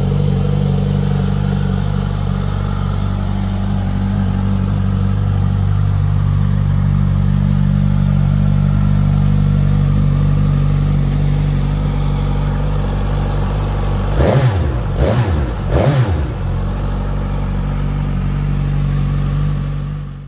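Suzuki GSX-S950's inline-four engine idling steadily, then revved in three quick throttle blips about two-thirds of the way through before settling back to idle.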